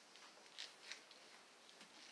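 Near silence with a few faint rustles, about half a second and a second in, from a cotton T-shirt brushing against the phone.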